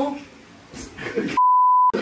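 An edited-in censor bleep: one steady, high pure beep, about half a second long, laid over speech near the end, with all other sound cut out while it plays.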